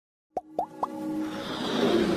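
Animated logo intro sound effects: three quick plops, each rising in pitch, about a quarter second apart, followed by a musical swell that grows steadily louder.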